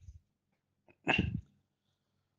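A man sneezes once, short and sharp, about a second in.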